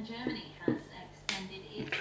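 Sharp metallic clicks of a disc-detainer pick turning the discs inside a Tech 7 motorcycle disc lock, the two loudest about two-thirds of a second and a second and a quarter in.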